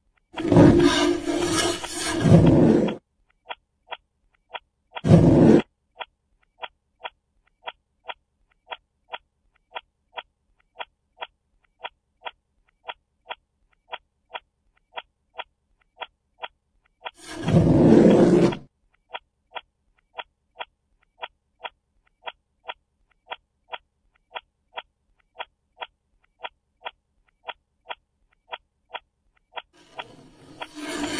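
A clock ticking steadily close to the microphone, about twice a second. Three loud, rough scraping noises from boxes and objects being dragged around cut across it: a long one right at the start, a short one about five seconds in, and another at about eighteen seconds.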